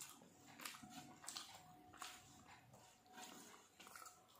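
Faint eating sounds: fingers mixing rice on a metal plate and chewing, with a few short sharp clicks.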